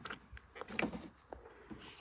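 Light handling noises: a few scattered soft clicks and taps as hands move over a hollow plastic goose decoy and the GoPro mounted on it.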